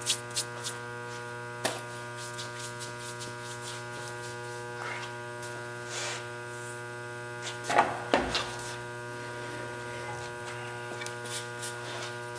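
Steady electric hum of a table saw's motor running, with a few light knocks and a short, louder noisy burst about eight seconds in.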